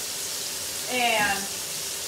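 Minced-meat patties frying in rapeseed oil in a pan, a steady sizzle. About a second in, a woman's voice sounds briefly over it.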